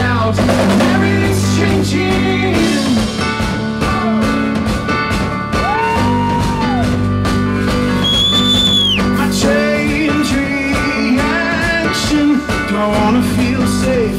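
Live rock band playing an instrumental passage: drum kit with cymbals under electric keyboard. About eight seconds in, a high held lead note bends down as it ends.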